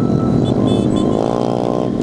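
Background music over running small-motorcycle engines, with one engine revving up, rising in pitch over about the last second.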